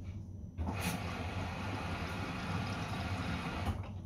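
Samsung front-loading washing machine on a delicates cycle: its water inlet valve opens about half a second in, and water rushes into the drum for about three seconds, then cuts off suddenly. A steady low hum runs underneath.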